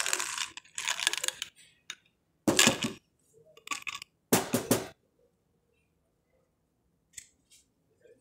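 Softgel capsules rattling inside an amber bottle and spilling out as it is tipped and shaken, in several short bursts. The loudest come about two and a half and four and a half seconds in, followed by a quiet stretch with a couple of faint ticks near the end.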